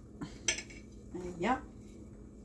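A china plate clinking once, sharply, against a frying pan as chopped onion is swept off it into the pan, with a faint tap just before.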